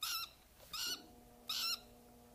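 Small tame parrot giving short, high-pitched calls, three of them about 0.7 s apart.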